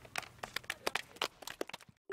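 Sheets of paper rustling and crinkling in hands: a quick, irregular run of crackles that stops just before the end.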